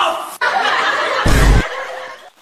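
Laughter, with a short, loud burst that has a deep low end about a second and a quarter in.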